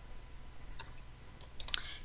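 A few light computer keyboard keystrokes in the second half, as a parenthesis is typed into a spreadsheet formula.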